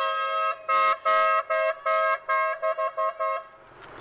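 Two-tone car horn honking in greeting from a passing parade car: a long held blast that breaks off about half a second in, then a run of about ten honks that get shorter and quicker toward the end, stopping about three and a half seconds in.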